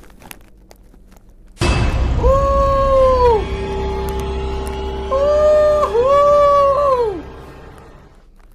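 Eerie Halloween-style sound effect: about a second and a half in, a sudden low boom, then three long wailing tones that slide down at their ends over a steady lower drone, fading out near the end.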